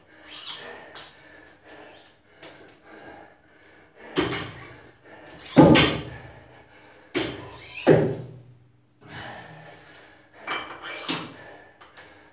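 A loaded barbell, with 60 kg called out as the workout's weight, thuds heavily onto a rubber gym floor about four times in the second half, the loudest a little past the middle. Between the thuds comes a man's hard breathing during the workout.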